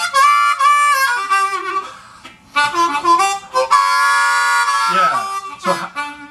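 Diatonic C harmonica played in a raw, gritty blues style: quick phrases of draw notes, then a long held four-draw with the five hole leaking in, bent down in pitch near the end.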